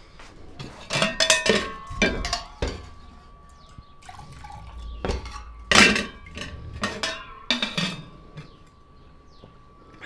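Stainless-steel tumbler clanking against a steel water vessel as water is poured and scooped, in a string of sharp metallic knocks that ring briefly. The clanks bunch in the first three seconds, with a loud one about six seconds in.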